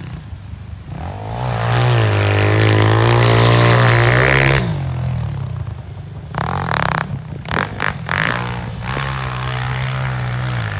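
Honda CRF100F pit bike's small four-stroke single-cylinder engine revving hard for about three and a half seconds, its pitch rising as it spins in snow, then dropping back. A few short throttle blips follow, then it holds a steadier rev near the end.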